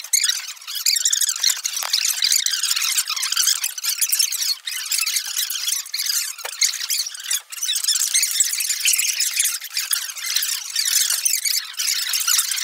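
Fast-forwarded room audio: classroom voices and bustle sped up into a dense, high, squeaky chatter with no low end.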